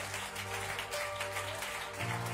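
Soft background music from a live worship band: sustained chords over a held low bass note, with no singing.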